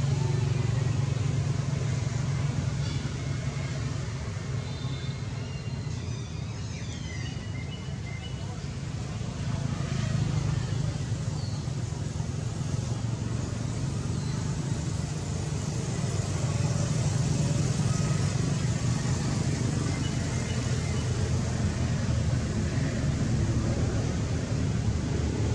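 Steady low rumble of background motor traffic, with a few faint high-pitched calls about three to seven seconds in.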